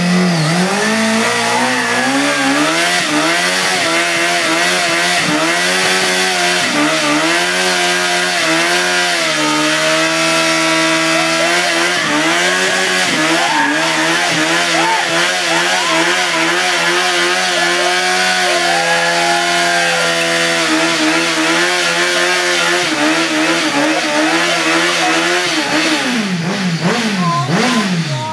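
Sport motorcycle engine held revved in a burnout, the rear tyre spinning on the spot. The revs climb in the first second, hold steady with small rises and dips, then drop and swing up and down near the end.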